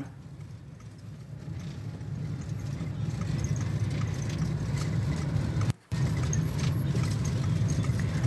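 Steady low rumble of road and engine noise from a car driving along a highway. It grows louder over the first few seconds and drops out for a moment shortly before the six-second mark.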